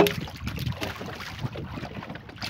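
A hollow bamboo tube trap knocks once against the wooden canoe's side, with a short ringing note, as it is pushed off into the river. Wind rumbles on the microphone afterwards.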